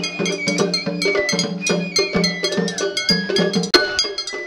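Festival hayashi ensemble: shinobue bamboo flutes play a melody over rapid, bright metallic strikes of a small hand gong (atarigane) and beats of a taiko drum.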